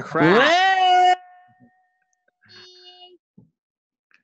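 A man's voice whooping: one loud "ooooh" that sweeps up in pitch and holds for about a second, then trails away, with a short faint held note about two seconds later.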